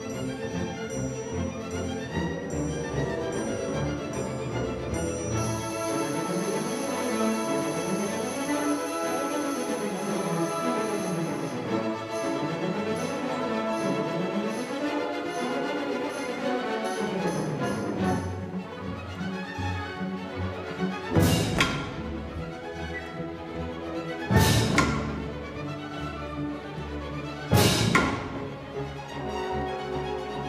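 Full symphony orchestra playing a classical piece. In the second half come three loud percussion strikes about three seconds apart, each ringing on after the hit.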